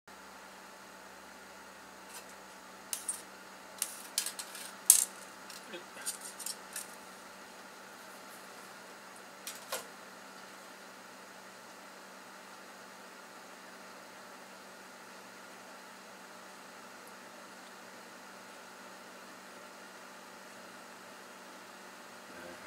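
Light clinks and clatter of hardware being handled on a workbench: a cluster of sharp clicks in the first few seconds and two more a little later, over a steady low hum. The arc flame itself makes no sound that stands out.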